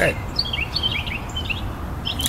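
A small bird chirping outdoors in a quick run of short, high, falling notes, over a steady low background rumble.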